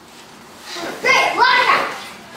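A high-pitched voice calls out once, for about a second, starting a little before halfway, with no clear words and its pitch swooping up and then down.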